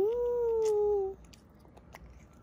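A little girl's long closed-mouth "mmm" of enjoyment while eating a strawberry: one held note of about a second that rises at the start and then slowly sinks.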